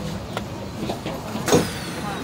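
Cabin noise inside a moving Singapore MRT train: a steady rumble with a few light clicks, then a sharp knock about a second and a half in, followed by a thin whine that falls in pitch.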